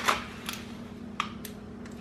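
A few short, sharp clicks and light crinkles of a plastic snack tray and wrapper being handled as a thin seaweed snack sheet is pulled out, over a faint steady hum.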